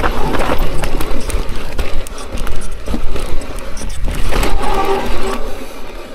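Electric mountain bike rolling fast down a rough dirt forest trail: tyres running over dirt and roots with a dense, irregular clatter of knocks and rattles from the bike. There is a low rumble of wind on the microphone underneath.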